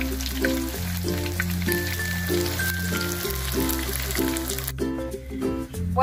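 Background music with a steady, stepping bass line over the sizzle of corn-masa cheese rolls frying in hot oil in a skillet; the sizzle cuts off suddenly near the end.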